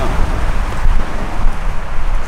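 Wind buffeting the microphone: a gusty low rumble.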